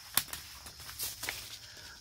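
Paper seed packets being handled out of a mail order: one sharp click just after the start, then a few fainter clicks about a second in.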